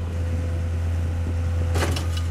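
Takeuchi TL130 compact track loader's diesel engine running steadily with a low hum, and a brief metallic clatter near the end.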